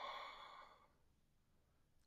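A woman's soft, audible breath out, fading away about a second in.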